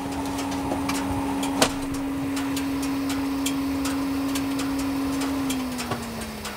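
Can-Am Maverick X3 side-by-side's turbocharged three-cylinder engine idling steadily, its pitch dropping slightly near the end, with a sharp click about a second and a half in.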